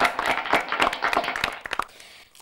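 A small group of people clapping, the claps distinct and uneven, dying away near the end.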